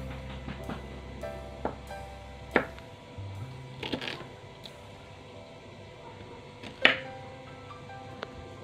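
Kitchen knife cutting through baby corn and striking a wooden cutting board: about five sharp knocks at irregular intervals, the loudest near the end. Soft background music plays throughout.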